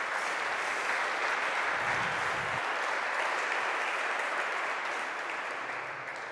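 An audience applauding, steady clapping that dies away near the end.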